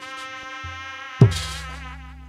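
Sundanese jaipong/sisingaan music: a held, nasal, buzzy reed-horn note, typical of the tarompet, with one loud low drum stroke about a second in whose pitch drops, typical of the kendang.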